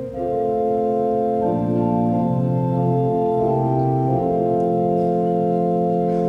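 Church organ playing sustained chords that change every second or two, introducing the announced hymn.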